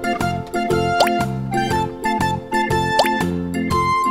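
Upbeat children's background music with a steady beat, with two quick rising pop-like sound effects, one about a second in and one near three seconds.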